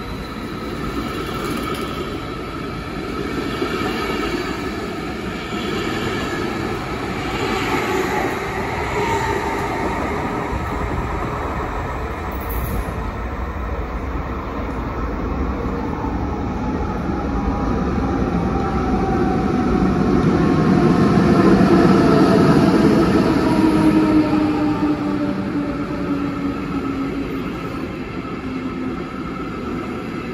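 Electric double-deck S-Bahn trains in an underground station: one runs along the platform at first, then another arrives, its noise building to a peak about two-thirds of the way through. As it slows, its electric whine falls in pitch.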